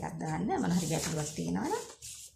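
Speech: a woman's voice talking, its pitch swooping up and down, breaking off just before the end.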